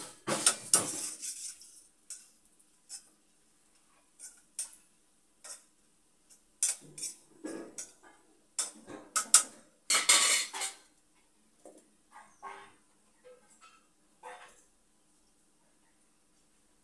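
Steel kitchen utensils clinking and scraping in irregular bursts as a steel ladle and other pieces are handled, loudest near the start and about ten seconds in, then stopping.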